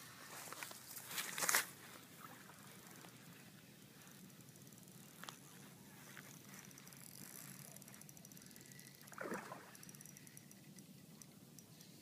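Faint rustling and handling noise, with a brief louder scrape about a second in, a single click midway and fine rapid ticking in the second half.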